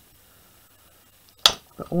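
One sharp click about a second and a half in, a metal craft blade set down on a cutting mat, after a quiet stretch; a woman's voice begins near the end.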